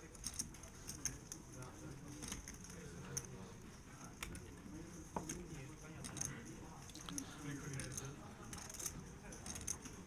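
Poker chips clicking in short, scattered bursts as a player handles his chip stack, over a faint murmur of voices.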